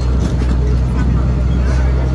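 Concrete mixer truck's diesel engine running with a steady low drone.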